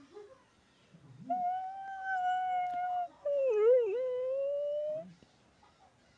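A boy wailing: two long, drawn-out, high-pitched cries, the second wavering and dipping in the middle before rising again.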